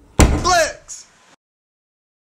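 A single loud slam, followed at once by a short vocal cry that falls in pitch, then a brief second sound.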